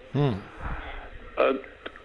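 Speech only: a man's short 'hmm' of acknowledgment, falling in pitch, then a pause broken by one brief vocal sound.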